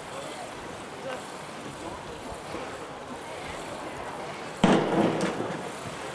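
A diver's entry into the pool off a 1-metre springboard: a sudden loud splash about three-quarters of the way in that dies away over about a second, after quiet outdoor pool ambience.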